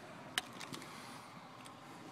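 A sharp click a little after the start, then a few fainter ticks, over a faint steady hiss.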